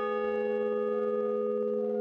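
A large hanging bell rings on after a single strike, a steady hum with several overtones that fades only slightly.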